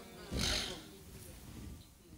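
A man's short audible breath, close to the microphone, about half a second in, followed by faint room tone.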